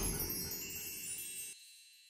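Fading tail of a TV channel's logo jingle: a quiet high ringing shimmer dying away, cut off about one and a half seconds in.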